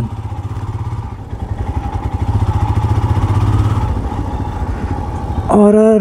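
Royal Enfield Scram 411's single-cylinder engine running under way with a pulsing low beat. It grows louder from about a second in as the bike pulls, and eases off again around four seconds.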